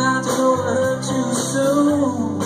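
Live band playing a country-rock song: electric and acoustic guitars, bass guitar and drums, with held, bending notes over a steady beat.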